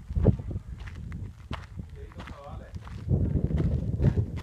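Footsteps crunching on sandy, gravelly ground as someone walks with the camera, with a low rumble on the microphone that grows louder near the end.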